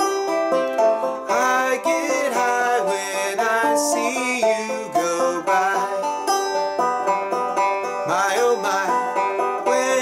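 Five-string banjo picked and strummed through a chord progression, with a man's singing voice coming in over it about a second in.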